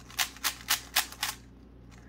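GAN 356 M magnetic 3x3 speed cube being turned quickly by hand: about five sharp plastic clicks in quick succession as the magnets snap the layers into place. The clicks stop about a second and a half in.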